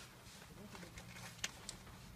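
Quiet car interior with a faint steady low hum, faint voices, and two small sharp clicks about one and a half seconds in.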